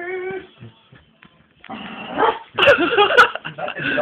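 A person's voice imitating a dog, whining and yipping, in two bouts with a short lull between. A couple of sharp clicks fall in the second bout.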